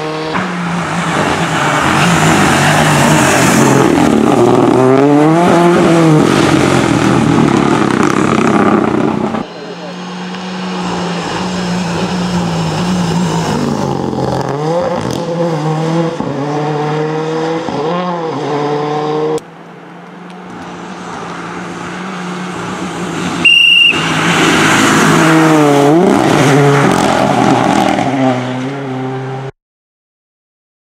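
Renault Clio rally car engine driven hard at speed, revving up and dropping repeatedly through gear changes, with tyre noise on wet tarmac, in three passes cut one after another. A short high-pitched beep sounds about two-thirds of the way through, and the sound cuts off abruptly near the end.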